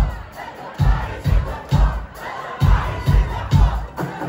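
A live metal band playing heavy low hits of kick drum and bass guitar in short stop-start groups, with the crowd shouting loudly over it.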